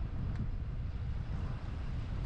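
Low, steady rumble of a Tiffin Allegro Class A motorhome driving slowly away along a campground lane, with wind buffeting the microphone.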